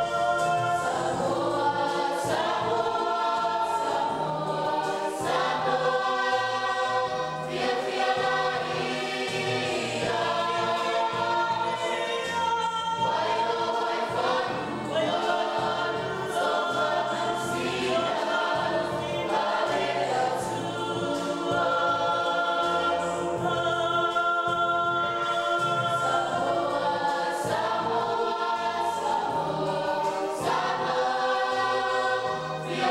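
Youth choir singing a gospel song together, a steady group sound with sustained notes.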